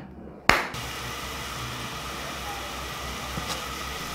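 Water boiling in a pan on a gas stove: a steady bubbling hiss over the burner's low rumble, starting abruptly after a click about half a second in.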